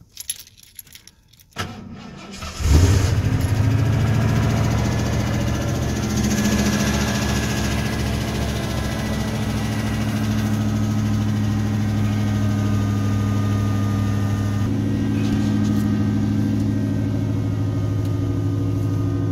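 1990 Ford F-150 pickup engine on a cold start after sitting two months: keys jangle in the ignition, the starter cranks for about a second, and the engine catches loudly about two and a half seconds in, then settles into a steady idle. The idle note shifts slightly about three seconds before the end.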